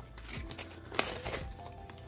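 Loose dimes clinking as they are dropped into a clear plastic zipper pouch, with the plastic crinkling; one sharp clink about a second in.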